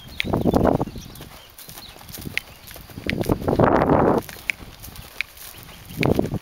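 Hoofbeats of a ridden horse cantering on grass and packed dirt, with two louder noisy bursts about a second long, one near the start and one about three seconds in.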